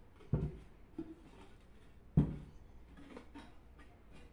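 Handling knocks of a vase built from ceramic tile strips as it is turned over and set down on a table: two dull thumps, the second louder, with a lighter knock between them and a little clatter near the end.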